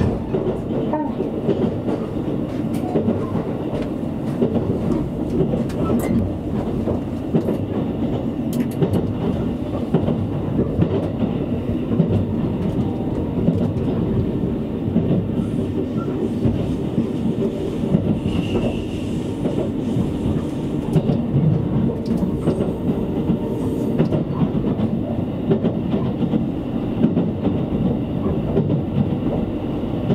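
Running noise of a JR Kyushu 787-series electric express train, heard from inside a passenger car: a steady rumble of the wheels on the rails at speed.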